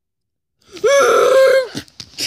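A child's loud, rough, drawn-out vocal cry lasting about a second, starting about half a second in, voicing a character's attack in play with action figures. A couple of short knocks follow near the end.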